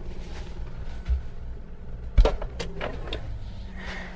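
Rustling and handling noise as a power cord is pulled out from behind a counter, with light clicks and one knock about two seconds in, over a faint low hum.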